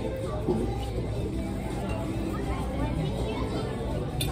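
Steady background chatter of other diners in a restaurant dining room, a murmur of overlapping voices with no single standout event.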